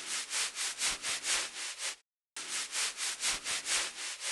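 Scalp brush scrubbing through lathered hair, in rhythmic scratchy strokes about four a second. The scrubbing comes in two runs of about two seconds each, with a brief pause in the middle.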